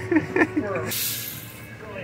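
Laughter, then a short hiss about a second in that lasts under a second, over a low steady hum.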